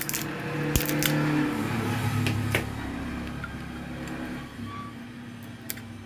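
A few short clicks and light scratching from a knife blade working at the paper tape on a fan motor's copper winding, over a low hum that swells in the first couple of seconds and then fades.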